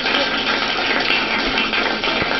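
Applause and crowd noise from a live music broadcast, played through a computer's speakers and recorded off them, with a thin, hissy tone.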